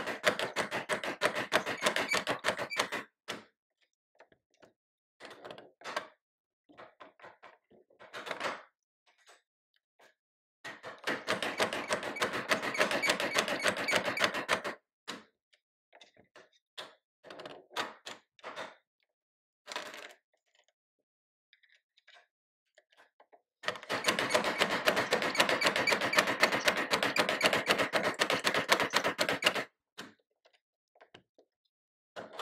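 A Herzberg double-barrel bassoon reed profiler cutting cane: its blade scrapes the cane in rapid clicking strokes as the carriage is worked back and forth. There are three long runs of this, at the start, in the middle and over the last six seconds, with scattered clicks and knocks from the machine being adjusted in between.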